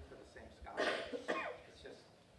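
A person coughing: two short coughs about half a second apart, near the middle.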